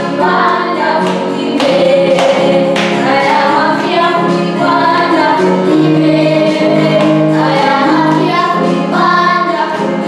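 A young girl singing a church song, holding long notes that move from pitch to pitch.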